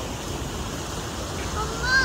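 Steady rushing outdoor background noise, with a short high-pitched voice call near the end.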